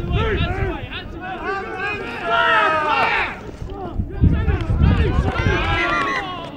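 Rugby players and touchline spectators shouting and calling out, several distant voices overlapping throughout.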